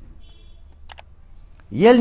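Two quick sharp clicks about a second into a pause in a man's speech; his voice resumes near the end.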